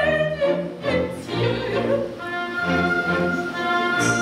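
Live orchestra playing opera music: a soprano's wavering sung phrase closes right at the start, then the orchestra carries on with string chords over bass notes and a long high note held from about halfway through.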